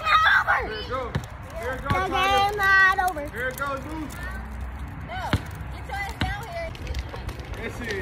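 High-pitched voices calling and shouting during a ball game, with one long drawn-out call about two seconds in. A few sharp knocks of a basketball bouncing on the asphalt come in between.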